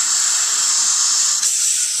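Steady high-pitched hiss of dental chairside equipment at the tooth, easing off about one and a half seconds in.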